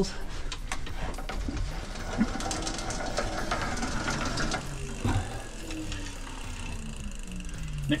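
Bicycle chain and freewheeling rear hub wheel of an electric trike turning with a steady mechanical whir that drops in pitch over the last few seconds as it slows.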